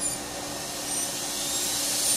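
Dental handpiece spinning a round bur against a plastic typodont tooth in small strokes, unroofing the pulp chamber for endodontic access. A steady hissing whine with faint high tones, growing louder near the end.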